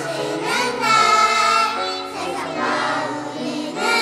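A choir of young children singing a Korean worship song together into a microphone.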